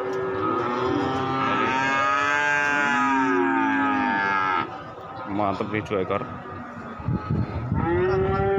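Young cattle mooing: one long moo of about four seconds that wavers in pitch, then quieter broken sounds, with another moo starting near the end.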